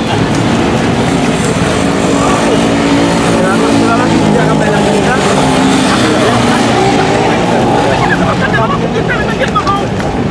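A motor vehicle engine running steadily and loud close by, with people's voices over it.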